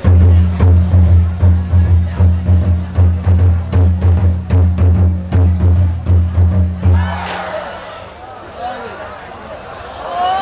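Large Vietnamese barrel drum (trống) beaten in a steady, fast beat of deep booming strokes, about three a second, accompanying a traditional wrestling bout. The drumming stops about seven seconds in, leaving crowd voices.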